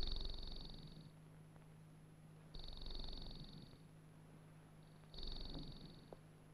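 Electronic sound effect from an old film soundtrack: three high-pitched, rapidly pulsing buzzes, each about a second long. The first comes at the very start, the second a little before the middle and the third near the end, over a faint steady hum.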